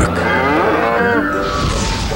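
A cow mooing once, a call of about a second that bends in pitch.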